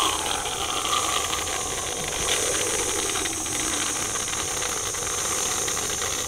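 Aerosol can of whipped cream spraying: one continuous hiss held for several seconds as cream is squirted straight into a mouth.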